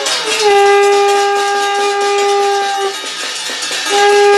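A steel thali plate beaten with a spoon in a rapid metallic clatter, under a loud, steady horn-like tone. The tone slides down in pitch at the start, holds for about two and a half seconds, breaks off and starts again near the end.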